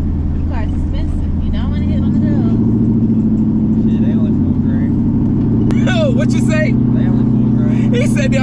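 Vehicle engine and exhaust drone heard inside the cabin while driving, a steady low hum that shifts in pitch about two seconds in and again near six seconds, with voices over it.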